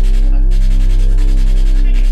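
A loud, steady, deep hum with a row of even overtones above it, unchanging throughout.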